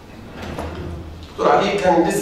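A person's voice starts speaking through a microphone about a second and a half in. Before it comes a quieter low rumble.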